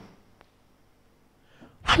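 A man's voice through a microphone PA system stops. Its echo in the hall dies away into near silence, broken by one faint click. His voice comes back sharply and loudly near the end.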